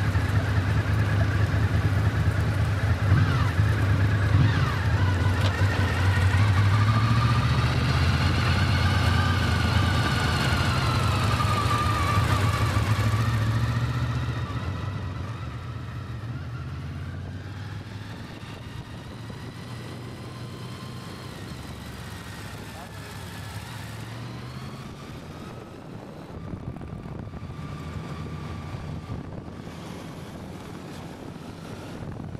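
Motorcycle engine running at low road speed, a steady low hum that drops noticeably in level about fourteen seconds in.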